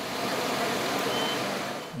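Steady outdoor background noise with no voices, and a brief faint high beep about a second in.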